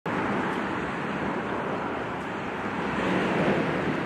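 Steady rushing noise of road traffic, swelling slightly near the end.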